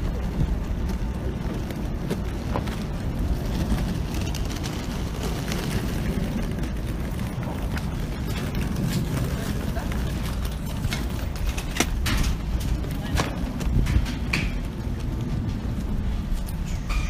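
Wheeled suitcases rolling over concrete, a steady low rumble with scattered sharp clicks and knocks, more of them in the second half.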